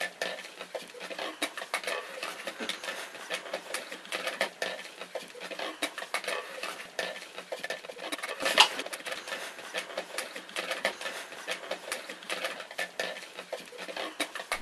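Draw balls being stirred by hand in a glass bowl: a continuous clatter of small clicks as the balls knock against each other and the glass, with one louder knock about halfway through.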